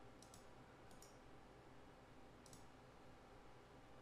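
Near silence with a few faint, short computer mouse clicks scattered through the span.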